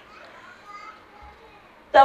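A pause in a woman's speech through a microphone: faint murmur of other voices, until she speaks again near the end.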